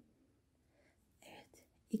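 Mostly near silence, broken about a second in by a brief, faint whisper from a woman, as if counting under her breath; her normal speech starts again at the very end.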